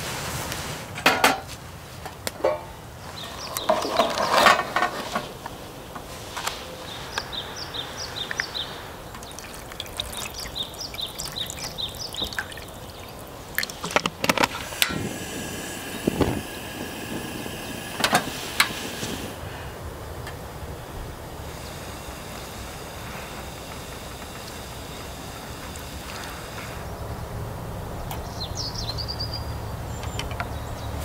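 Small birds singing in short runs of repeated high chirps, among scattered clinks and knocks of metal camp cookware. There are liquid sounds of noodle soup in a steel pot on a portable gas stove.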